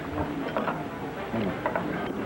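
A metal spoon clinking and scraping in a ceramic bowl: a run of small irregular clicks and knocks, with faint tableware clatter behind.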